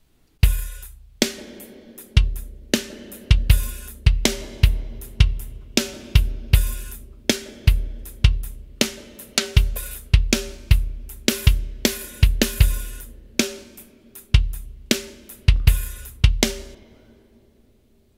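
A simple kick, snare and hi-hat drum loop playing back from a Pro Tools session, with a little reverb on each drum fed through post-fader sends to a reverb return. The beat stops near the end and a reverb tail fades out.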